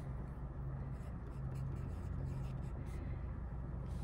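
Pencil writing on paper: faint, short scratching strokes, over a low steady hum.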